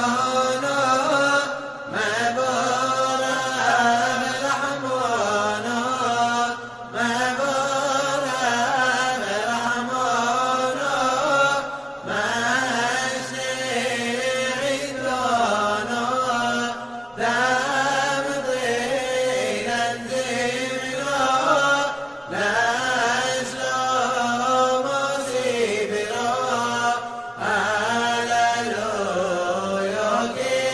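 Singing of a Hebrew piyyut for Simchat Torah in the Yemenite chant style, in winding phrases about five seconds long separated by short pauses.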